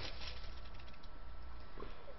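Quiet room with a steady low hum and faint rustling of knitted fabric and yarn being handled.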